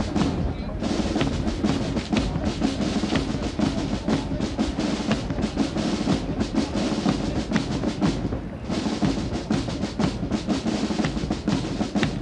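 Military marching band playing a march, carried by snare and bass drums beating a steady cadence.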